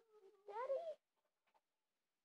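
A house cat meowing: a quieter drawn-out sound, then one louder meow that rises in pitch about half a second in.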